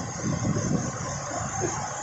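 Waterfall and rushing muddy stream: a steady roar of falling water, with a faint voice in it.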